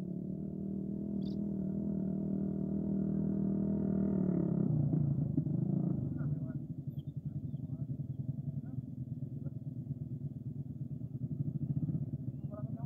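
A motorcycle passing close by on the road. Its engine grows a little louder over the first four seconds or so, then its note drops about four and a half seconds in, and it carries on as a lower, fluttering engine sound as it moves away.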